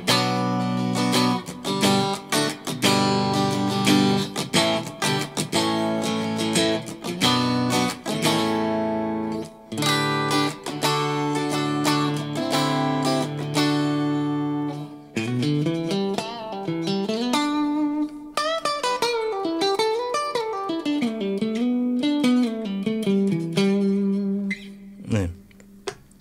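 Cort G250 SE electric guitar played with a clean tone through its middle VTS63 single-coil and rear VTH59 humbucker pickups together. It starts with ringing chords, then turns to single-note melodic lines about fifteen seconds in.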